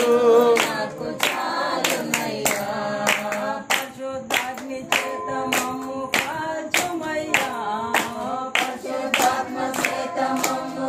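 A small group singing a Telugu Christian worship song unaccompanied, voices together, with a steady beat of hand claps about two a second.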